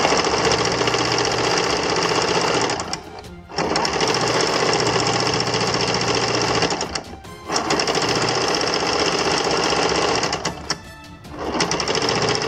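Electric sewing machine stitching layered satin cloth, running in three steady runs of about three seconds each with brief stops between them as the fabric is repositioned.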